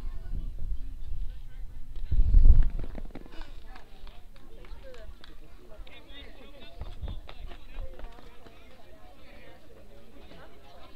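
Faint background voices talking and calling out around a baseball field, with a brief low rumble about two seconds in.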